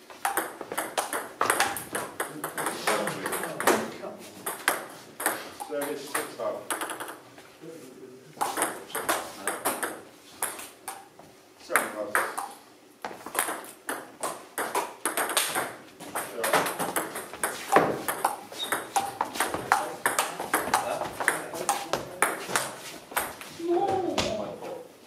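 Table tennis rallies: the ball clicking off the bats and bouncing on the table in quick succession, several rallies with short pauses between points.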